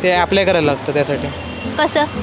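Speech, with a steady low hum of road traffic beneath.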